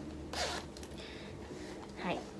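Metal zipper of a small Louis Vuitton monogram shoulder bag being pulled open by hand: one short zip a little way in, then a fainter rasp as the zip is drawn further.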